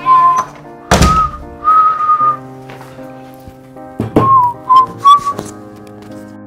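A whistled tune in short held notes over soft, steady background music chords, with two dull thuds, about a second in and about four seconds in.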